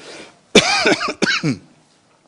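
A man coughing twice, the coughs about half a second apart.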